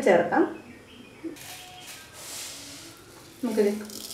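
Hot oil hissing softly in a nonstick wok. The hiss rises about a second and a half in and fades before the end.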